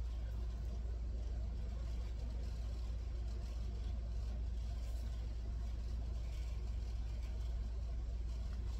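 Steady low background rumble with faint hiss, unchanging, with no distinct events.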